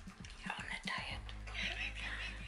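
Dog licking and chewing a marshmallow close to the microphone, in irregular bursts, over background music.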